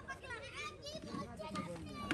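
Children's voices chattering and calling in the background, faint and overlapping.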